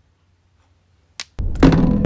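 About a second of silence, a single short click, then a sudden loud explosion sound effect with a deep rumble.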